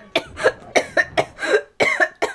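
A woman laughing hard in short bursts, about four a second.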